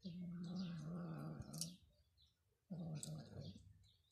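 A cat growling twice: a low, steady, slightly wavering growl lasting nearly two seconds, then a shorter one about a second later.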